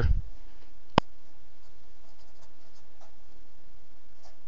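A felt-tip marker writing faintly on paper over a steady hiss, with a single sharp click about a second in.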